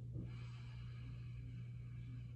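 A man taking one long, deep breath in, a soft steady hiss lasting about two seconds, drawn on cue for a stethoscope check of his lungs.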